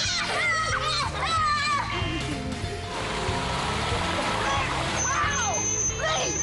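Background music with laughing voices over water splashing and sloshing in a swimming pool. A thin high whine starts near the end.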